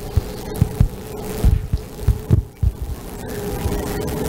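Irregular low thuds and bumps of a microphone being handled, over a steady low hum from the sound system.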